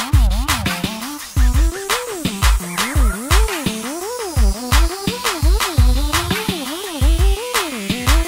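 Instrumental hip-hop beat with no vocals: a regular heavy kick drum and sharp snare hits under an electronic melody that slides up and down in pitch.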